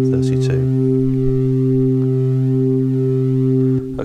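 Studiologic Sledge synthesiser sounding one steady held organ tone from a Hammond-style patch: sine-wave oscillators with a little pink noise and drive mixed in, and chorus set to imitate a slow-moving Leslie speaker. The note stops just before the end.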